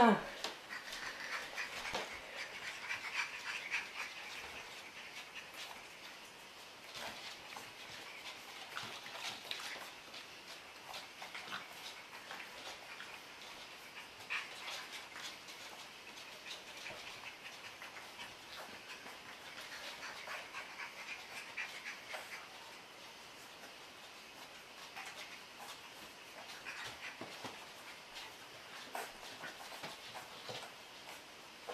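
Four-week-old puppies whimpering and squeaking faintly on and off as they play, with scattered light clicks.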